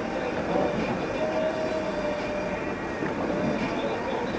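Steady road and engine noise heard from inside a car driving on a snow-packed street, with faint wavering tones over it.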